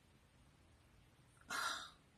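Near silence, then one short, sharp breath drawn in by a woman about one and a half seconds in.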